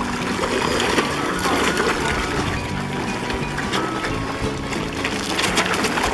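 Background music over a mass of carp splashing and churning at the water's surface, a dense patter of small splashes.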